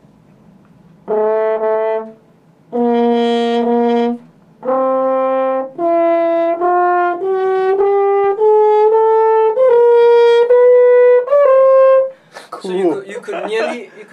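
French horn played with the right hand in the bell: three separate held notes, then a run of joined notes climbing in small steps. The player shifts his hand in the bell to bend each pitch, the natural-horn hand technique that fills in nearly a chromatic scale.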